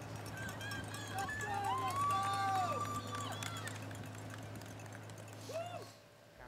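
Course sound behind a pack of marathon runners: faint footfalls over a steady low hum. Between about half a second and three and a half seconds in, several voices call out in long, drawn-out shouts that glide up and then fall away.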